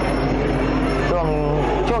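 Steady hubbub from a stadium crowd at a Muay Thai fight, with a man's voice briefly about halfway through.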